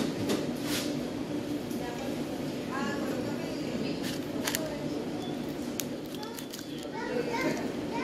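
Indistinct background chatter from other people, with a steady low hum and scattered light clicks and clatter.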